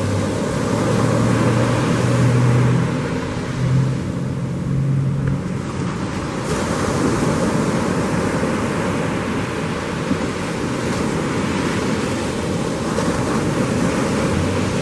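Ocean surf breaking and rushing, with wind buffeting the microphone. A steady low engine hum sits under the surf in the first five seconds or so, then fades into it.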